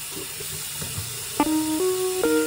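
Water running from a tap into a stainless steel sink as hands are washed under it, a steady hiss. About halfway through, background music of held chords stepping from one to the next comes in over the water.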